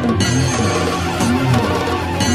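Instrumental passage of a Tamil devotional kavadi song: a melodic line repeating short phrases over a steady percussion beat.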